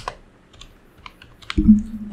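Typing on a computer keyboard: a quick run of separate keystrokes entering a short phrase.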